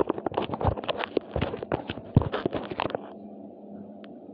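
Handling noise from a phone being moved and set in place: a rapid, irregular run of crackles and knocks on the microphone that stops about three seconds in, leaving a low steady hum of room tone.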